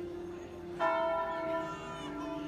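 Church bell struck about a second in, its tone ringing on and slowly fading over the hum of earlier strokes.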